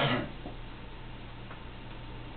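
A knock and rustle from someone shifting and crossing his legs in an upholstered recliner, fading away just after the start. Then quiet room tone with a steady low hum and a few faint ticks.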